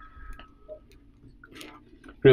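A quiet lull: low room tone with a few faint, scattered clicks and ticks.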